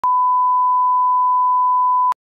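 Broadcast line-up test tone: a steady, single-pitch sine tone that runs with colour bars at the head of a programme tape, used to set audio levels.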